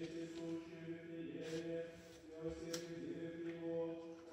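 A man chanting the Gospel lesson of the Orthodox liturgy in recitative, holding one reciting note, with short breaks between phrases.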